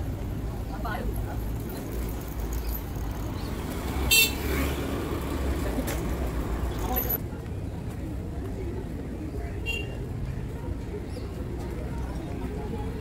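Town street ambience: a steady low traffic rumble with people's voices in the background, and a brief high-pitched toot about four seconds in that stands out as the loudest sound, with a fainter one near ten seconds.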